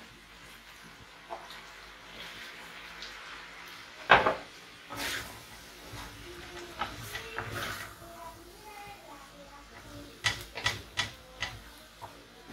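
Wooden spoon stirring fried rice in a metal frying pan, with clacks of the spoon against the pan: one loud knock about four seconds in and a quick run of taps near the end.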